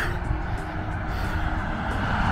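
Road traffic: a car going by on a wet road, its steady tyre and engine noise slowly swelling.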